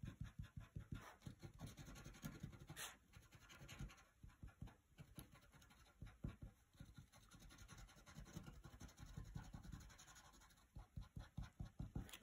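Chisel-tip glue pen scribbling over the edge of a paper die-cut frame: faint, quick, irregular scratching strokes of the pen tip on card.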